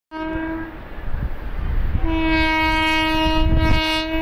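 Electric locomotive horn: a short blast, then about a second later a long steady blast, over a low rumble.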